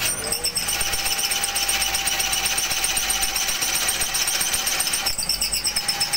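Bench drill press running, its bit boring into a clamped block: a steady motor tone under a loud gritty cutting noise, easing briefly near the end.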